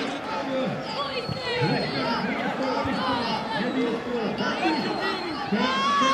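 Many overlapping voices of young footballers and people around the pitch, calling out and chattering while a free kick is set up.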